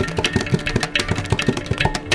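Mridangam and ghatam playing a fast, dense run of strokes over a steady drone, a Carnatic percussion passage without singing.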